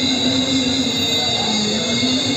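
A man's melodic Quran recitation through a microphone and loudspeakers, drawing out one long held note.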